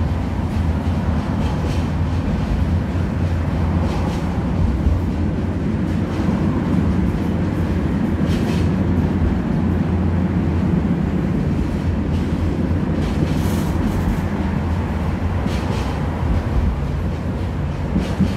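Steady low rumble of a tram in motion, heard from inside the car, with a few brief higher hisses along the way.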